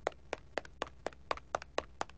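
A quick, uneven run of about a dozen light taps or clicks on a hard surface.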